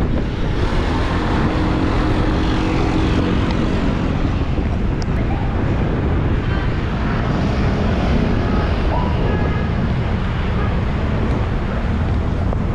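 Steady rushing wind on the microphone of a cyclist's camera while riding, over the noise of road traffic, with a faint engine hum in the first few seconds.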